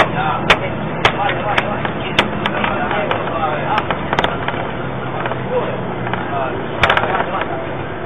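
Bus engine running steadily, heard inside the passenger cabin, with scattered sharp clicks and knocks, the loudest cluster about seven seconds in.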